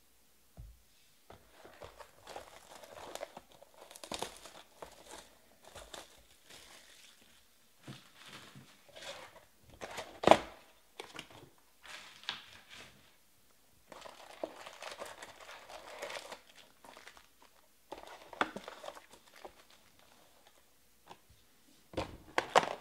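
Plastic shrink wrap crinkling and tearing as a hobby box of Panini Select football cards is unwrapped and opened, then foil card packs rustling as they are pulled out and stacked, in irregular bursts. A sharp snap about ten seconds in is the loudest sound.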